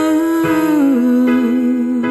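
Live pop ballad: a female singer holding a wordless 'ooh' note that slides down about halfway through and ends with vibrato, over electric piano chords.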